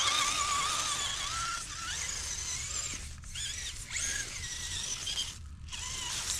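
Axial Capra UTB18 RC crawler's electric motor and gears whining, the pitch wavering and rising and falling with the throttle, as the truck crawls over pine needles and leaves.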